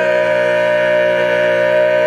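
A cappella male barbershop quartet holding the final chord of the song, the four voices sustained steadily in close harmony.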